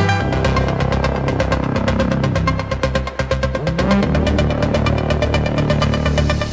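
Techno from a DJ mix: a fast, even hi-hat pattern over a heavy, dense bassline.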